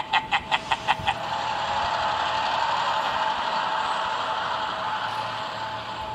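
A quick run of about eight clicks in the first second, then a steady hiss with a faint high tone that slowly fades toward the end.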